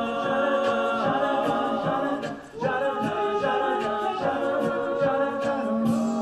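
Male a cappella group singing held, wordless chords in close harmony, with a brief break about two and a half seconds in before the chords come back and settle into a long held chord near the end.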